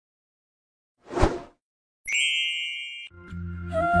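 A short whoosh, then a single bell ding that rings and fades over about a second. Music with a low drone and a melody starts about three seconds in.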